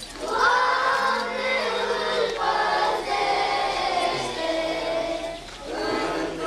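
A choir of voices singing Orthodox church chant in sustained phrases. One phrase fades out about five and a half seconds in and a new one begins.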